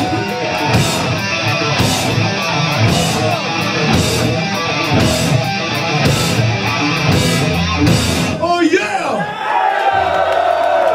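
Live stoner/punk rock band playing loud: distorted electric guitars through Marshall amps, bass and drums, with a crash cymbal hit about once a second. The song cuts off about eight and a half seconds in, and crowd voices shout and whoop.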